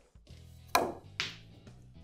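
Snooker cue tip striking the cue ball, then about half a second later a second sharp click as the cue ball hits an object ball.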